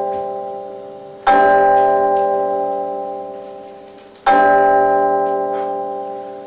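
A deep bell tolling: struck twice, about three seconds apart, each stroke ringing on and dying away slowly.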